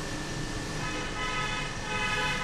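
A steady high-pitched tone with several overtones starts about a second in and holds on, over a low background hum.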